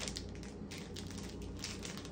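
Small plastic candy wrapper crinkling irregularly as fingers work at it, trying to tear it open by hand.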